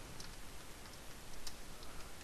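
A few faint, scattered clicks of computer keys being pressed during code editing, over a low steady hiss.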